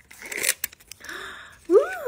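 Crinkling and tearing of a thin plastic wrapper as a miniature toy from a Mini Brands capsule is unwrapped by hand, a sharp crackle in the first second fading to a softer rustle.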